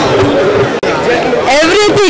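People talking amid crowd chatter, broken by a brief sudden gap a little under a second in.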